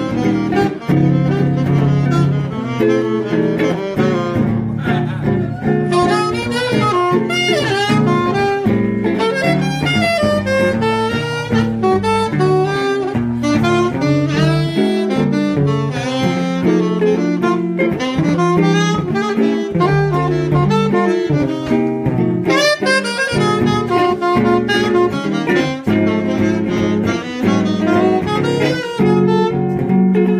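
Live jazz combo playing: a saxophone carries the lead in quick, running phrases over a low double bass line.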